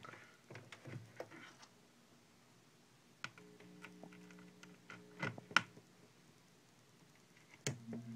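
Sharp clicks and knocks of an audio cable's jack plug being handled and pushed into the sockets of a homemade Weird Sound Generator synth. A faint steady low hum sounds between two clicks in the middle, and a louder click comes near the end.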